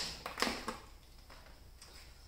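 A few light clicks and knocks, the loudest in the first second, then two faint ticks, from hands handling a bench power supply and its test-lead clips.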